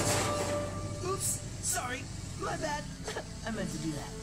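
Low-level murmurs from men's voices in short fragments over a low steady hum, after a loud exclamation dies away; a man says "okay" at the very end.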